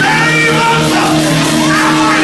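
A preacher singing and shouting into a handheld microphone in long, bending wails over loud church music with steady held chords.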